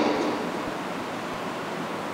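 Steady even hiss, the noise floor of the microphone and sound system, heard in a gap in the speech. The echo of the man's voice dies away just at the start.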